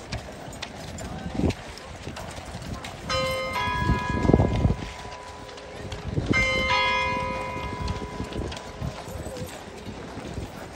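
Household Cavalry horses walking, their shod hooves clip-clopping irregularly on the ground. A bell strikes twice, about three seconds apart, each stroke ringing on for a second or more.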